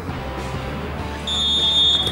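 Background music, then a little over a second in a referee's whistle sounds one long, steady blast, the loudest sound here.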